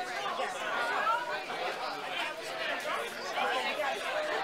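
Many people talking at once: steady, overlapping crowd chatter with no single voice standing out.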